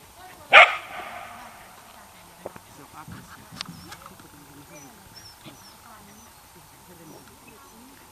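A dog barks once, loud and sharp, about half a second in. Faint voices and a few light clicks follow.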